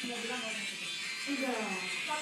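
A young woman's voice, quiet and drawn out with sliding pitch, falling near the end, over faint background music and a steady buzz.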